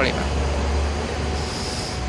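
Street traffic: a motor vehicle passing close by with a steady low engine rumble that eases about one and a half seconds in, and a faint high whine near the end.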